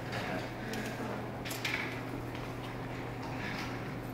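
Quiet room tone: a steady low hum with a few faint short clicks, one about one and a half seconds in.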